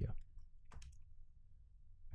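A few computer mouse clicks, the clearest about three-quarters of a second in, over a faint low hum.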